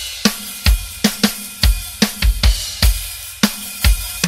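Hard rock drum kit playing on its own: kick drum, snare and cymbal hits in a steady beat, a drum break with the rest of the band out. The bass comes back in just after.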